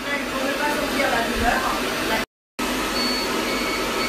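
Steady whooshing fan and air noise of a laser hair-removal machine running, with faint voices under it in the first half. The sound cuts out completely for a moment a little past the middle, then the fan noise returns with a thin, high, steady tone over it near the end.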